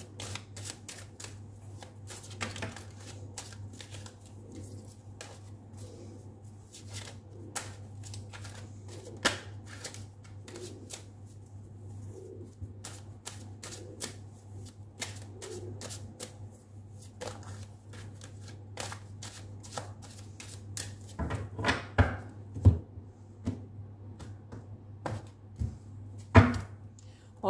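Ethereal Visions tarot deck being shuffled by hand: a quick, continuous run of small card clicks over a steady low hum, with a few louder knocks near the end.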